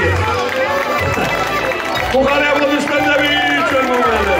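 A man's voice amplified through a microphone and PA, talking over background music with a steady low bass.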